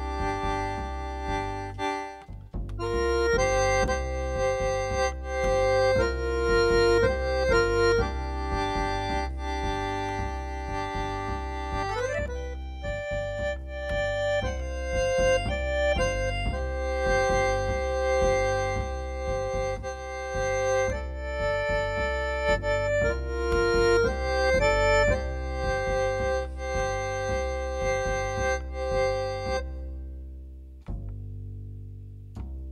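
Piano accordion playing a tune: held melody notes over a steady, even bass-and-chord rhythm, with one note sliding upward about twelve seconds in.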